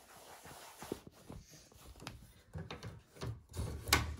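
Hands rubbing and pressing felt against a plastic embroidery hoop and handling the hoop, a scuffing, shuffling noise with scattered knocks and one sharp click near the end.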